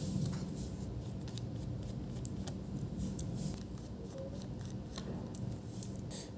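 Faint, scattered small clicks and ticks of a precision screwdriver and tiny screws being worked out of a laptop's metal bottom cover, over a low steady room hum.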